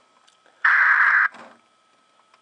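Police radio scanner feed playing through an iPod touch's small speaker: one sudden burst of radio static lasting about two-thirds of a second, starting just over half a second in, between dispatch transmissions. A faint steady tone sits underneath.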